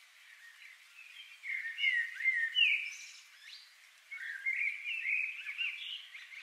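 Faint birdsong ambience: two spells of chirping and short whistled glides, the second starting about four seconds in after a brief lull.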